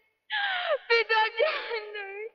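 A woman crying out in anguish over her wounded father, her high voice wavering and breaking into sobbing gasps, starting a moment in.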